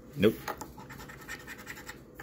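A coin scraping the coating off a paper scratch-off lottery ticket in quick, short strokes.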